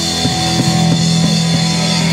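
Live rock band playing an instrumental passage: electric guitar, bass guitar and drum kit, with long held notes over the drums.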